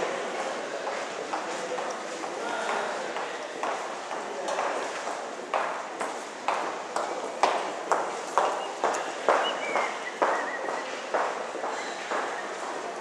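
Footsteps on a hard stone or tile floor at a steady walking pace, about two steps a second.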